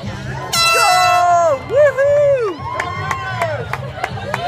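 Air horn blast, about a second long, starting half a second in: the signal for runners to start the half marathon. It is followed by whoops and cheers from the runners.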